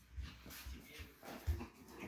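Chihuahua puppies about seven weeks old play-fighting together: faint scuffling and small puppy sounds, with a soft thump about one and a half seconds in.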